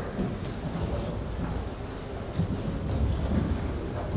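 Low, uneven rumbling background noise of a crowded courtroom, picked up by the live broadcast microphone.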